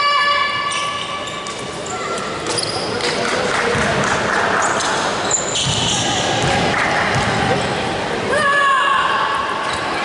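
A basketball bounced on a wooden gym floor at the free-throw line, with voices and long shouted calls from the bench or stands echoing in a large hall, one held call at the start and another near the end.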